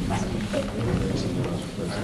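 Low, indistinct voices of people talking quietly in a room, with a steady low rumble underneath.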